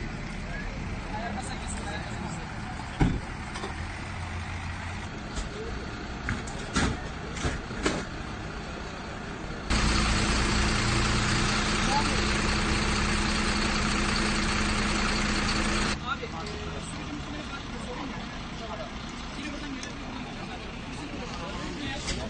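Street ambience with background voices and vehicle noise, and a few sharp knocks. For about six seconds from near the ten-second mark, a louder, steady vehicle engine runs with a low hum, starting and stopping abruptly.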